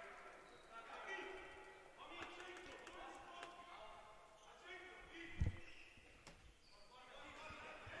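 Faint sound of a handball game on an indoor court: players calling out to each other and the ball bouncing on the floor, with one heavier thud about five and a half seconds in.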